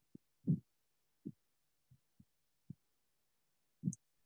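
About seven soft, muffled low thumps at uneven intervals, the one about half a second in and the one near the end the loudest.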